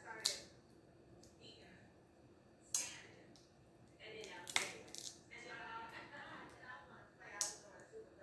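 Crab claw shell cracking and snapping as it is picked apart by hand: four sharp cracks a couple of seconds apart, with soft mouth sounds of eating between them.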